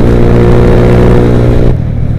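Honda motorcycle engine running at a steady cruising speed with heavy wind rushing on the microphone; about a second and a half in, the throttle is closed and the steady engine note drops away as the bike slows.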